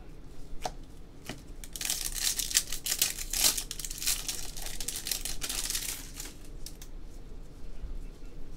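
A foil trading-card pack torn open by hand, the wrapper crinkling and crackling for about four seconds. A few light clicks of cards being handled come just before it.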